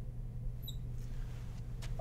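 Marker tip squeaking on a glass lightboard while writing: one short, high squeak a little under a second in, over a steady low hum.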